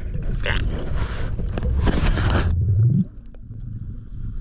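Underwater water noise on a freediver's camera: rushing and bubbling in three bursts of hiss over a low rumble, with a short rising low groan before the noise drops away about three seconds in.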